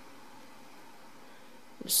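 Faint steady hiss of background noise, with the start of a spoken word near the end.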